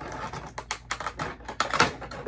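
Rapid, irregular crackling and clicking of a clear plastic packaging insert being handled as a Funko Pop figure is pulled out of its cardboard box, loudest near the end.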